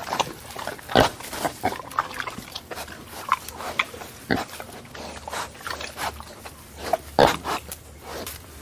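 Cartoon eating sound effect: a run of irregular chomping, slurping and pig-like grunting noises, loudest about a second in and again near the end.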